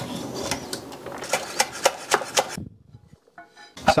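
A metal spider strainer clinking and scraping against a stainless steel pot as pasta is stirred in boiling water, a run of sharp metallic clicks over a bubbling hiss. It stops suddenly about two and a half seconds in.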